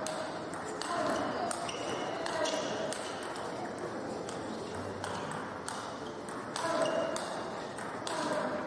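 Table tennis rally: the celluloid-type ball clicking sharply off rubber-faced bats and the table, a stroke or bounce every half second to a second.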